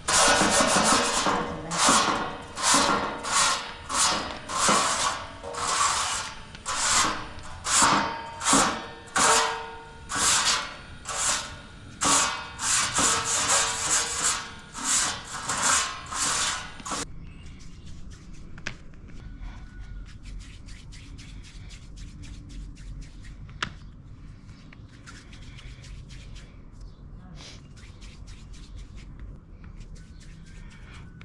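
Twig-bundle brush sweeping across a metal saj griddle in quick scraping strokes, about two a second, brushing the sooty surface clean. The strokes stop suddenly about 17 seconds in, leaving only faint, soft handling sounds.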